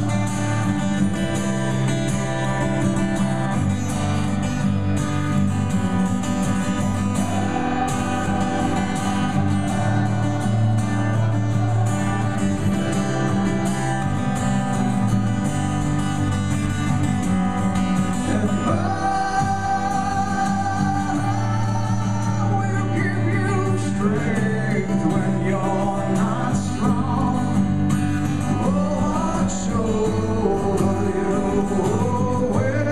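Live solo acoustic guitar music heard from the audience, with singing coming in over the guitar about two-thirds of the way through.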